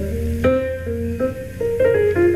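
A short jazz piano phrase from an old interview recording: single notes stepping up and down, with a firm attack about half a second in. It demonstrates horn-like phrasing on the piano, running one note into the next.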